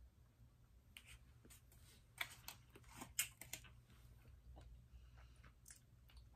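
Faint chewing of candy, with a cluster of soft mouth clicks and crunches about two to three and a half seconds in.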